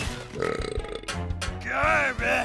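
Cartoon recycling robot's comic burp, a warbling, gurgling vocal sound that swells toward the end, over background music.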